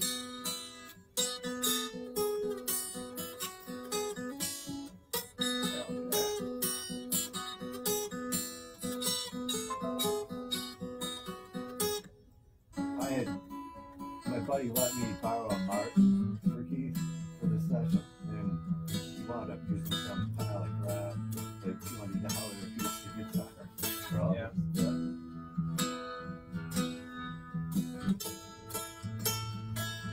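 A recorded guitar track played back over studio monitors: a steady picked and strummed guitar pattern. It stops briefly about twelve seconds in, then comes back with a deeper bass line underneath.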